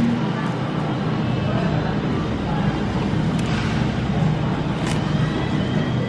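Steady supermarket background noise, an even hum with faint distant voices.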